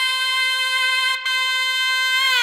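Background music: a reedy wind instrument holds one long steady note, broken briefly about a second in.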